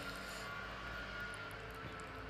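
A steady mechanical hum with a thin high whine running under it, with a few faint soft ticks of fingers picking through food on a tray.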